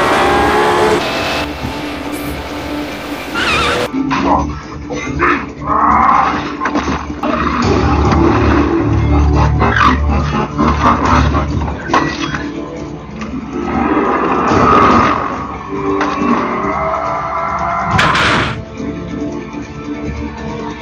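Action soundtrack music with dubbed sci-fi sound effects laid over it: sweeping pitch glides and scattered sharp hits, and a short loud whoosh-like burst near the end.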